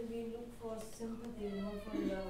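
Long, drawn-out wordless vocal sounds, held at a steady pitch and stepping between a few notes.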